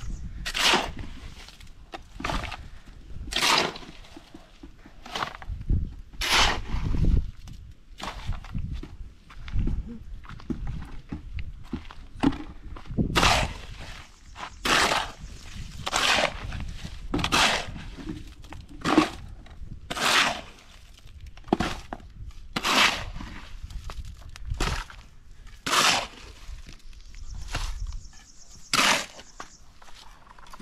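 Small shovel scraping into gravelly sand and tipping it into a bucket, over and over: a short gritty scrape and rattle about once every second or so.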